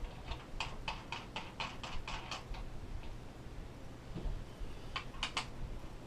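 Metal top-post terminal adapters being screwed by hand onto a car battery's terminals: a quick run of light metallic clicks, about five a second for a couple of seconds, then a few more near the end.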